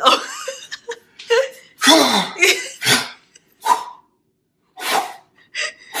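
Human laughter in a series of short bursts, one with a falling pitch, broken off by a pause of most of a second just after the middle.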